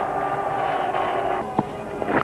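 Stadium crowd noise, a steady hubbub with a few held tones, easing off about a second and a half in, followed by a single short knock near the end.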